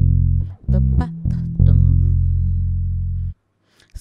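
Electric bass guitar playing a gospel bass lick. It starts with a few quick plucked low notes, then rings one long note that is cut off sharply about three and a half seconds in.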